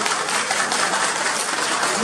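Audience applauding: many hands clapping in a steady, dense patter.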